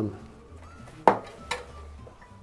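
Two short clacks about half a second apart as a fat-bike tire's bead is pushed by hand over the lip of a carbon rim and into its drop centre, with the first clack the louder.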